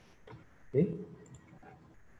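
Faint clicks of a computer mouse, around one short spoken word.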